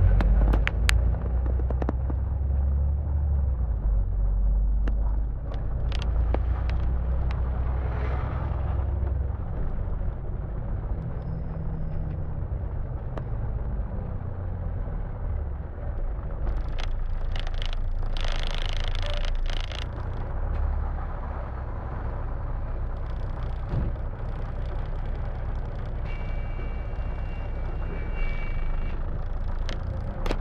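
Bus interior: a steady, low engine rumble from on board a double-decker bus moving in traffic, with a short hiss about eighteen seconds in and a brief high two-note tone near the end.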